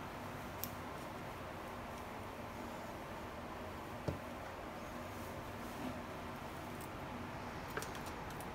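Steady faint background hiss with a few small clicks and taps, the clearest about four seconds in, from multimeter test leads and a small alligator clip being handled.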